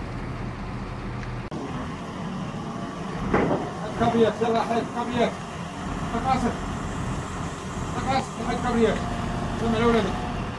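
A truck-mounted crane's diesel engine running steadily. From about three seconds in, men's voices call out over it in short repeated bursts.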